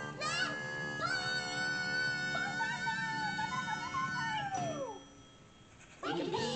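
Background music with a long held note that slides down and fades a little before the end, then a short quieter gap.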